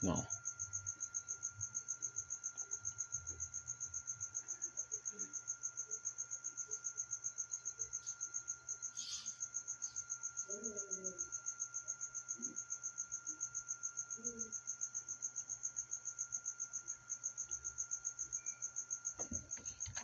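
A cricket chirping steadily and rapidly, about four to five high-pitched chirps a second, over a faint low hum.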